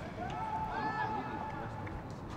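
Shouted voices at a football match, with one long drawn-out call in the middle, over the steady low background noise of the ground.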